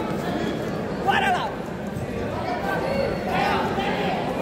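Crowd chatter in a large sports hall, many voices at once, with a louder shouted call about a second in and another just past three seconds.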